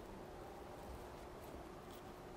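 Quiet room tone with a steady faint hum, and a couple of faint small ticks from a brass speaker-wire pin connector being screwed together by hand.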